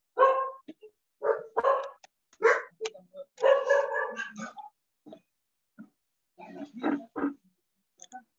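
A dog barking repeatedly in short bunches, heard over video-call audio; the barking stops for about two seconds, then a few more barks come near the end.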